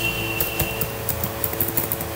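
A steady low hum with scattered faint clicks.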